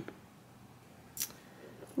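Mostly quiet, with one brief handling noise about a second in as the cork-fabric flap and its metal clasp connector of a belt bag are worked by hand.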